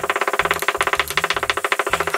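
A steady, buzzy pitched tone pulsing rapidly, about fifteen times a second, and stopping abruptly just after the end. It sounds like added music or a sound effect rather than the pestle striking the stone mortar.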